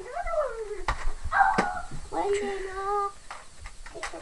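Children's voices talking, the words indistinct, with two sharp clicks about one and one and a half seconds in.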